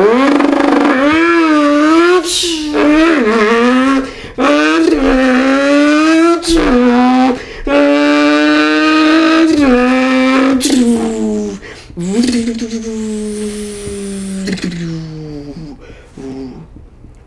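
A man imitating a turbocharged two-rotor Mazda RX3 drag car with his mouth. The buzzing engine note climbs and drops again and again as it shifts through the gears, with a few short hissing pops at the shifts, then falls away in one long dropping tone near the end.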